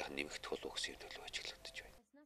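A man speaking in Mongolian, fairly quietly, his talk breaking off abruptly at the end.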